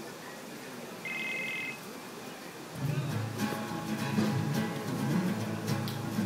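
A short electronic beep about a second in, then an acoustic guitar starts a country song's instrumental intro about three seconds in, strummed and growing louder.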